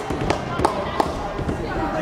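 About four sharp knocks in the first second, echoing in a school gymnasium, over a steady murmur of voices.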